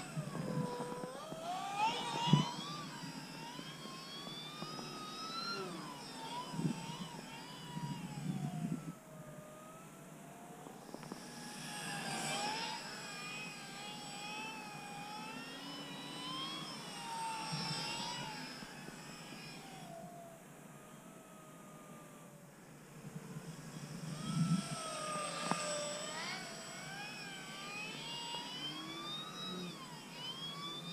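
Brushless electric motor and 13x6 four-blade propeller of an RC plane in flight, its whine rising and falling in pitch as the throttle and distance change and fading in stretches as the plane goes farther off. There is a sharp knock about two seconds in.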